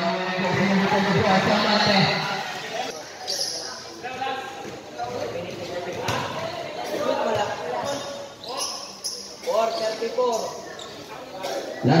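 A basketball bouncing on a concrete court while voices call out across the court, echoing under the covered roof.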